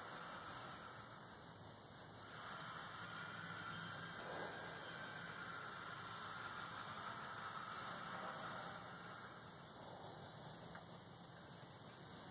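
Insects trilling in a steady chorus, a high, fast-pulsing continuous sound, with a fainter, lower-pitched tone that swells and fades beneath it.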